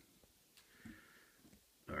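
Near silence with a faint breath through the nose about a second in, then the start of a spoken "all right" at the very end.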